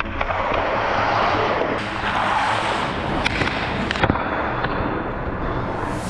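Ice hockey skate blades scraping and carving across rink ice, a steady hiss, with a few sharp clicks scattered through.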